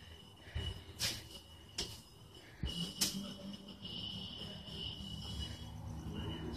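Faint high-pitched trill of crickets outdoors, with a few sharp clicks in the first half and a low hum coming in about halfway through.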